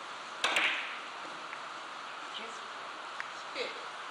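Carom billiard balls clacking together during a scoring three-cushion shot: a loud cluster of sharp clacks about half a second in, then a few fainter clicks as the balls roll on and touch.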